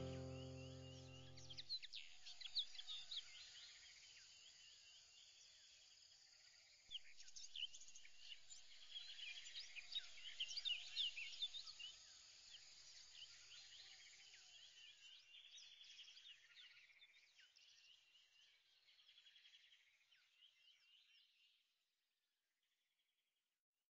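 Background music ends about two seconds in, leaving many birds chirping, faint and gradually fading away to silence near the end.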